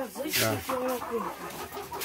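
Caged brown laying hens clucking, a busy run of short pitched clucks, with a brief noisy burst about half a second in.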